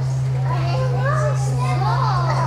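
Several children's voices talking and exclaiming at once, over a steady low hum.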